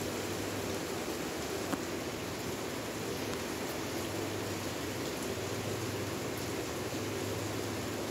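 Steady background hiss with a faint low hum, and one light click about two seconds in.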